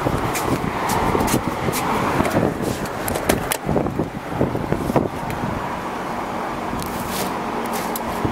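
Steady outdoor road-traffic noise, with scattered handling clicks and a sharper click about five seconds in, after which a low steady hum comes in.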